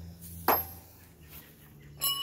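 A single sharp metallic clink with a brief high ring about half a second in, from heavy rusty steel steering-clutch parts knocking together as they are handled.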